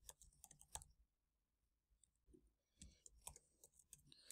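Faint computer keyboard typing: a short run of key clicks in the first second, a pause, then another run of clicks near the end.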